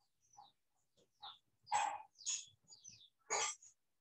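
Faint animal calls in a string of short bursts, about six in four seconds, some falling in pitch, the loudest nearly two seconds in and near the end.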